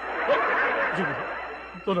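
Audience laughter from a sitcom laugh track, a crowd of many people laughing together; it is loudest just after the start and fades.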